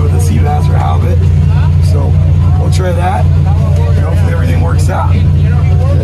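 Boat engine running underway with a steady low drone heard inside the wheelhouse, with voices talking over it.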